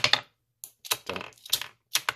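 Loose 9mm brass cartridges clicking and clattering against a loading block and the wooden bench as they are handled and spill: a quick run of light clicks, loudest at the start, then a few more scattered ones.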